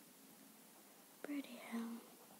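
Quiet room tone, then a girl's brief murmured vocal sound starting about a second and a quarter in and lasting under a second, with a small click at its start.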